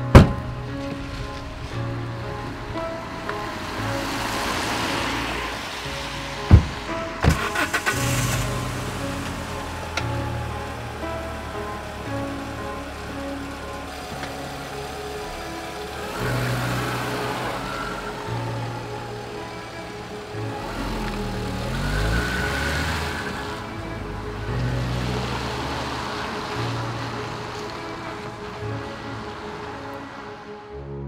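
An Alfa Romeo 156 Sportwagon's tailgate slams shut at the very start, with a sharp knock about six and a half seconds in and a run of clicks and knocks around seven to eight seconds. After that comes the car's engine and tyre noise on wet road, rising and falling in swells. A slow film score with sustained notes plays throughout.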